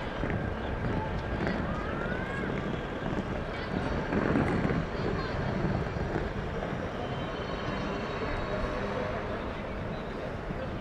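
Outdoor ambience with wind buffeting the microphone and distant, indistinct voices of players, a little louder about four seconds in.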